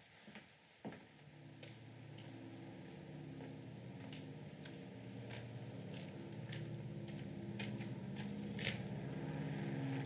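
Footsteps on a cobbled street, a step every half second or so, over a low sustained orchestral underscore that swells slowly.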